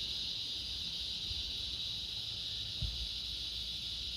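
Cicadas calling in a steady, unbroken high-pitched chorus.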